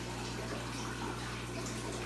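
Aquarium water running steadily: the constant splash and trickle of the tank's filter flow, with a low steady hum underneath.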